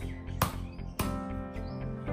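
Background music with a steady run of notes, cut by two sharp chops of a large knife into a young coconut's husk about half a second and a second in.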